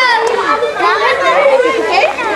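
A group of children shouting and chattering at play, several high voices overlapping.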